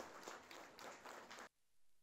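Near silence, with very faint scattered applause that drops out about one and a half seconds in.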